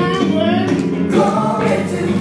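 A young man singing a gospel song into a handheld microphone through the PA, over musical accompaniment with choir-like backing vocals.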